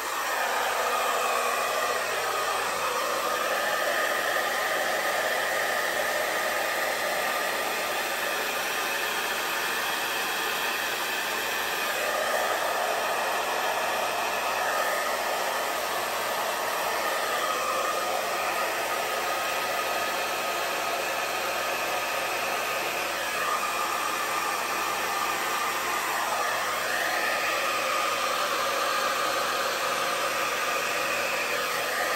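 Hand-held hair dryer running steadily on high, blowing air across wet poured acrylic paint on a canvas, its tone shifting slightly now and then.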